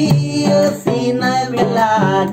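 Acoustic guitar strummed while a man sings a Sinhala song, his voice bending up and down over the chords; there is a brief break in the sound a little before the middle, and a sung note rises near the end.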